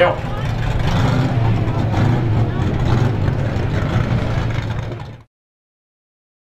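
Strictly Stock race car engines running in a steady drone as the cars drive off the track after the heat; the sound cuts off abruptly about five seconds in.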